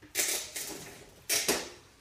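Two brief rustling scuffs about a second apart, each fading quickly: movement noise as a person lifts his hand off a wooden workbench and moves away.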